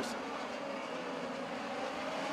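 Midget race cars' engines running at speed together around a dirt oval, a steady drone with no sudden events.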